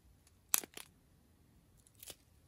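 Thin plastic bags of square resin diamond-painting drills crinkling as they are handled, with one sharp crackle about half a second in and a smaller one just after.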